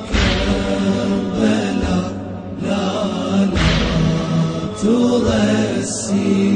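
Chanted vocal music of a Shia religious lament: voices holding a wavering melodic chant, with a deep beat every few seconds.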